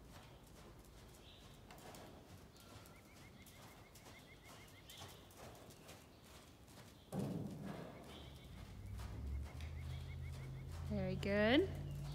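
Horse trotting on soft arena sand, its hoofbeats faint and muffled. About seven seconds in a louder sound starts suddenly, and a low steady hum joins it shortly after.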